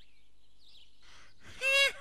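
Cartoon soundtrack of faint bird chirps, then a short high-pitched call about one and a half seconds in.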